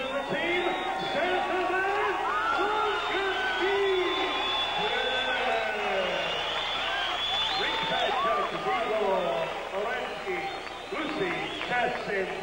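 A ring announcer's amplified voice drawing words out in long held tones, with crowd noise behind it.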